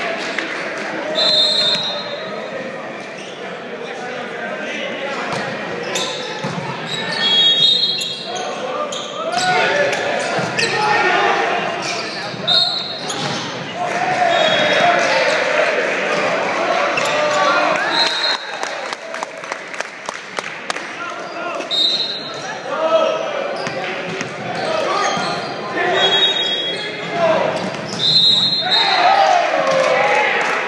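Volleyball game in a large gym that echoes: players and spectators talk and shout throughout. Sharp thuds of the ball being hit are scattered through it, along with short high squeaks of sneakers on the hardwood floor.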